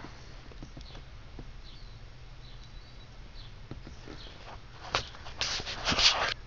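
Quiet car-cabin room tone with a steady low hum and faint bird chirps from outside, then a louder rustling of the handheld camera being moved about near the end.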